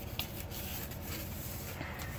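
Faint rustling and crinkling of a sheet of worksheet paper as its flaps are lifted and folded by hand, with a couple of soft paper clicks, over a steady low background hum.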